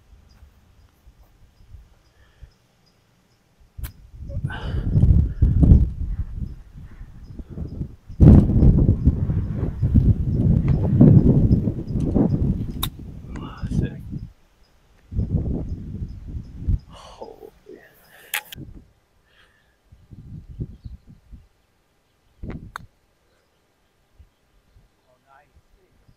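Wind buffeting the microphone in irregular gusts, the longest and loudest running for about six seconds through the middle, with a few sharp clicks in between.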